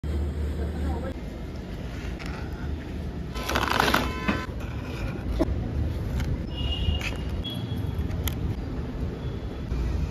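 Steady low background rumble with indistinct voices and a few light clatters, and a short louder burst of noise a few seconds in.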